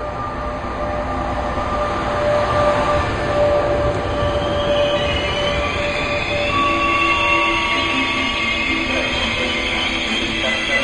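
Passenger coaches behind an E464 electric locomotive rolling past with a heavy rumble, their brakes squealing in high steady tones that grow stronger and higher from about halfway through, as the train slows into the platform.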